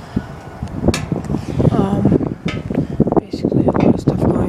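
Voices talking indistinctly, with a few sharp knocks, one about a second in and another past the middle.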